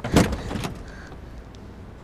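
A sudden knock and rustle at a car as a person is bundled into the seat through its open door, loudest about a quarter second in and over within about half a second, followed by a low steady rumble.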